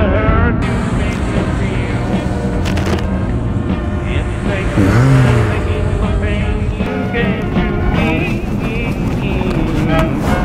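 A country song plays: a wavering melody line over a full, steady backing.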